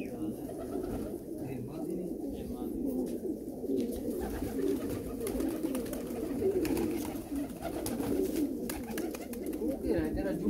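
A flock of Shirazi fancy pigeons cooing, many low coos overlapping into a continuous chorus.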